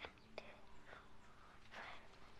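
Faint whispering, with a couple of short light clicks in the first half-second.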